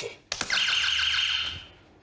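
Game-show buzzer hit by a contestant: a sharp start, then a single electronic buzzer tone lasting about a second and a half that fades out at the end.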